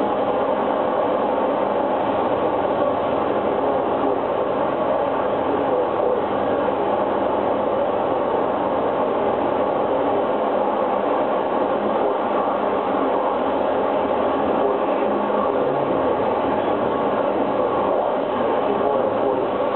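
Live noise music from a performer's electronics: a dense, steady mass of harsh noise that barely changes in level, heaviest in the middle range.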